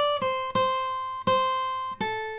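Taylor AD22e acoustic guitar playing a slow lead lick of single picked notes on the upper strings. A higher note falls to a lower one, which is then picked twice more, and each note is left to ring.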